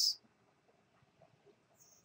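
Near silence: room tone in a pause between spoken phrases, opening with the hiss of a word's final "s".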